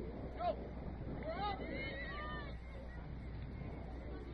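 Distant shouts and calls from players and spectators at a soccer match. There is a loud shout about half a second in and a few more calls over the next two seconds, over a steady low rumble.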